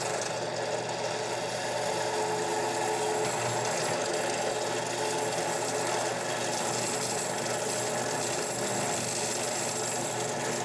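Benchtop drill press running steadily as its quarter-inch bit drills a row of holes through thin-wall SDR-21 PVC pipe.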